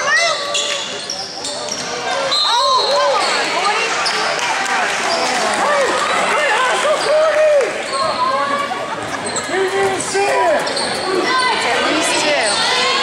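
Basketball game in a gym: the ball bouncing on the court amid the voices of players and spectators.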